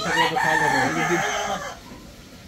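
Rooster crowing: one long crow that fades out shortly before the end.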